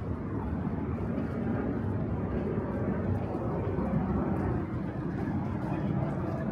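City street ambience: a steady rumble of road traffic.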